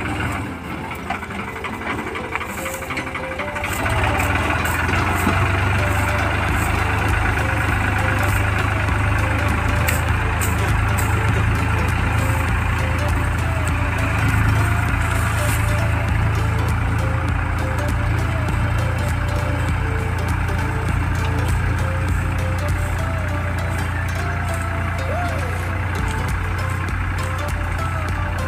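New Holland tractor's diesel engine running steadily under load as it drags a levelling blade through soil, louder from about four seconds in.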